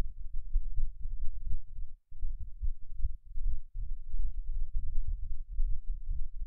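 Loud, uneven low rumble with nothing above it, cutting out completely for a moment about two seconds in.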